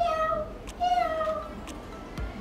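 A person imitating a cat: two meows, each falling in pitch, the second about a second in.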